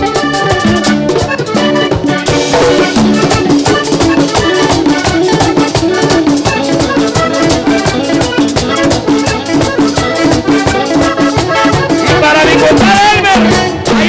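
Live vallenato band playing: a button accordion melody over a steady scraped-rattle rhythm from the guacharaca, with drums and bass. A singer's voice rises in near the end.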